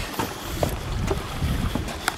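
Wind buffeting the camera microphone, heard as an uneven low rumble, with a few light clicks from handling.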